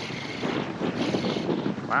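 Strong wind buffeting the microphone in a steady rushing noise, over shallow water lapping at a beach.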